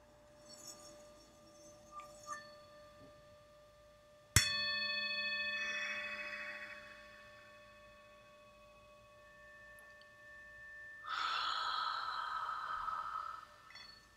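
Tibetan singing bowl: a light tap about two seconds in, then a sharp strike about four seconds in whose several steady overtones ring on and slowly fade. Near the end a soft hiss rises for a couple of seconds and stops.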